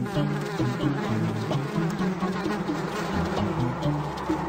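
Cartoon sound effect of a swarm of bees buzzing continuously around a hive.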